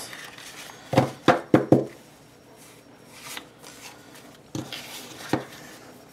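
Hands handling paper sticker sheets on a tabletop: four quick knocks close together about a second in, then two softer knocks near the end.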